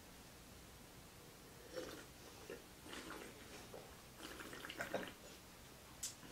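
Faint sips and slurps of white wine from glasses during a tasting: a few short wet mouth sounds about two and three seconds in, and a quick cluster of them about four seconds in.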